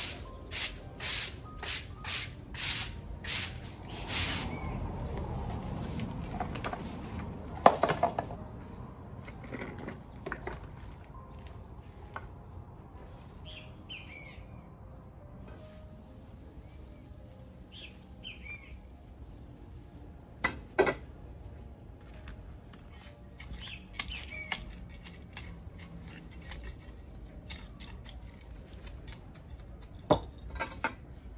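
Broom sweeping loose soil across paving stones, nearly two quick strokes a second for the first four seconds or so, then a sharp knock about eight seconds in. Afterwards it is quieter, with faint bird chirps and a couple of knocks around the twenty-second mark.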